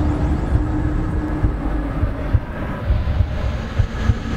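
Sci-fi sound effect of a heavy rumble with uneven low thuds and a steady hum underneath, standing for the temporal anomaly surging with energy.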